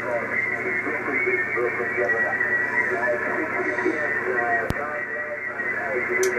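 Amateur radio voice traffic in lower sideband on the 80 m band from an Icom IC-756 transceiver's speaker, with the MFJ-1026 noise canceller switched on. The voice sounds thin, cut off above the speech range, with a steady high tone under it. A sharp click comes about three-quarters of the way through.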